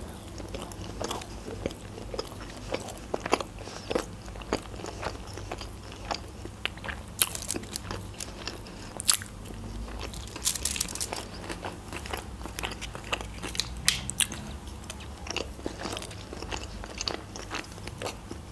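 A person chewing a mouthful of sushi roll: irregular wet clicks and soft crunches of the mouth, with busier bursts of crunching about halfway through.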